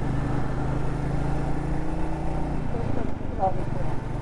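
Royal Enfield Meteor 350's single-cylinder engine running steadily while the bike is ridden, a low even hum with road and wind noise.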